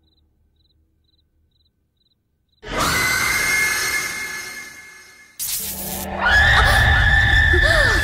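Horror film score and sound design: near silence, then a sudden loud sting at about two and a half seconds that fades away, followed by a second sharp hit and a louder, dissonant swell with swooping tones over a low rumble near the end.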